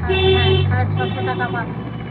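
An elderly woman's voice speaking over a steady low rumble.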